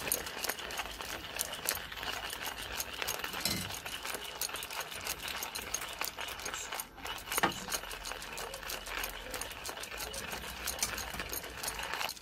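Stainless-steel hand-cranked coffee grinder grinding beans: a steady, rapid crunching and rattling as the crank is turned.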